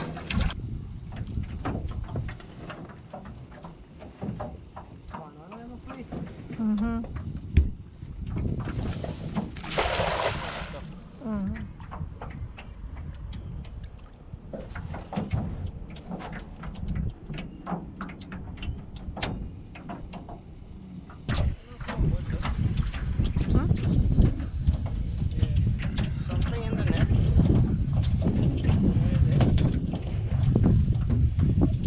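Wind buffeting the microphone on a small flat-bottom boat, with scattered knocks and clatter in the boat and a brief hissing rush about nine seconds in. The wind noise grows louder from about twenty-one seconds on.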